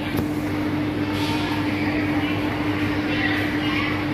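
Busy supermarket ambience: a steady mechanical hum holding one constant tone, under faint chatter from shoppers.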